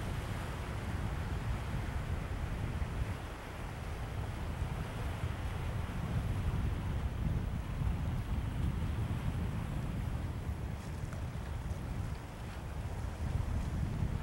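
Outdoor wind buffeting the microphone in a steady, gusting low rumble, with the faint wash of the ocean behind it.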